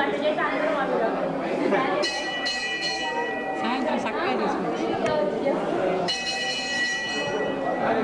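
Many people talking at once in a large room. A bell rings twice in steady runs of about two seconds, a couple of seconds in and again near the end.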